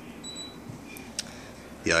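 Single short high beep from a Fujitsu mini-split indoor unit acknowledging a remote-control command, here economy mode being switched off. A sharp click follows about a second later.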